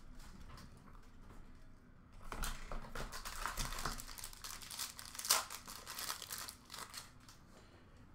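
Plastic shrink-wrap being torn and crinkled off a sealed box of trading cards: a quiet start, then from about two seconds in a fairly soft, irregular run of crackles and rips that lasts several seconds.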